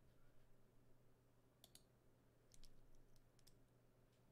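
Near silence: room tone with a faint steady low hum and a few faint clicks at a computer desk, a pair about one and a half seconds in and a small cluster from about two and a half to three and a half seconds.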